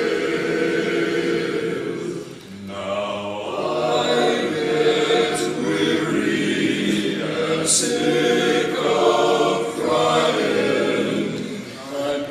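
A men's barbershop chorus singing a cappella in close harmony, holding long chords. There is a brief break for breath about two and a half seconds in and another near the end.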